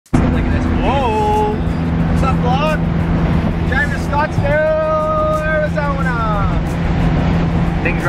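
A modified car's engine running steadily under way, heard from inside its stripped, roll-caged cabin; the driver says it is running a little rich. Over it a voice makes a few long, sliding and held notes.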